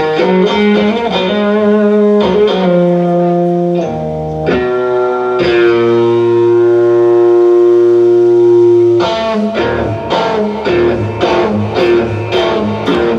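Live rock trio led by electric guitar, with bass and drums: the guitar plays melodic lead phrases, holds one long note in the middle, then the band breaks into a choppy rhythm near the end.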